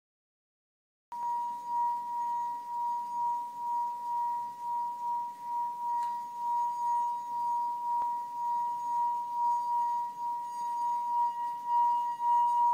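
Wine glass partly filled with water singing as a wet fingertip circles its rim: one steady, pure high tone that starts about a second in, swelling and easing slightly in loudness as the finger goes round.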